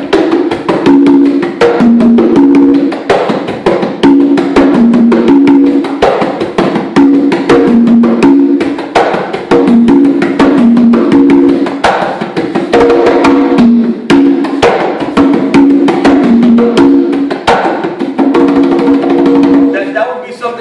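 Congas played by hand in a salsa rhythm (the tumbao), with sharp slaps and ringing open tones at two or three pitches in a pattern that repeats about every two seconds.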